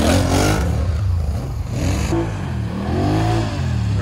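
ATV engine revving up and back down twice, once right at the start and again in the second half, over a steady low engine drone.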